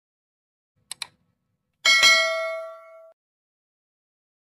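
Subscribe-button sound effect: two quick mouse clicks, then a bright bell ding that rings out and fades over about a second.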